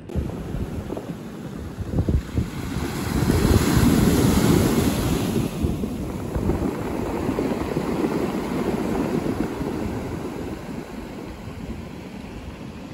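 Wind buffeting the camera microphone in a low, gusty rumble that swells a few seconds in and then eases off.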